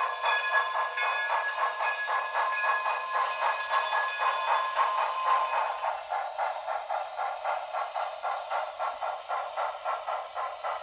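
Steam sound from the HO-scale Broadway Limited 2-8-0 Consolidation's Paragon3 decoder: steady exhaust chuffing at about four chuffs a second as the model runs. It plays through the locomotive's small onboard speaker, so it sounds thin with no bass. A steady tone under the chuffs fades out about halfway.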